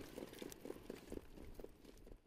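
Faint hoofbeats of harness pacers moving up behind the mobile starting gate: soft, irregular thuds over a low rumble.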